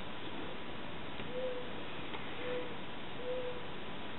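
Three short, faint hooting calls about a second apart, most likely a bird calling, heard over a steady background hiss.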